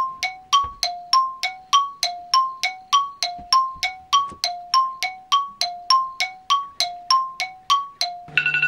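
A repeating two-note chime sound effect: a higher and a lower bell-like tone alternate in an even rhythm, about three strikes a second, each ringing briefly. It works like a ticking clock over a countdown timer.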